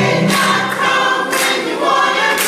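Church choir singing together, several voices on held, shifting notes, with a sharp beat about once a second.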